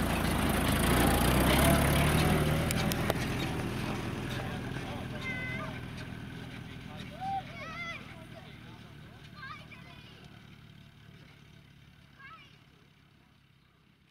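1943 WWII army jeep's four-cylinder side-valve engine running as it drives off across grass, loudest about two seconds in and then fading steadily with distance. Faint distant voices call out over it in the second half.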